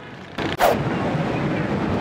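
A single short, sharp burst about half a second in, followed by steady outdoor background noise.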